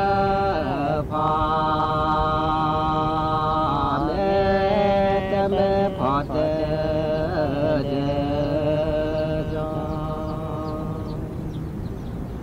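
A voice chanting in long, drawn-out notes, each held for a few seconds. It slides to a new pitch about one, four, six and eight seconds in, and grows a little softer near the end.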